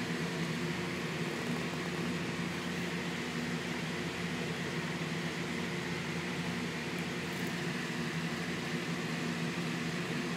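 Steady machine hum, with several unchanging low tones and a faint high whine. A page of the book rustles briefly about seven seconds in.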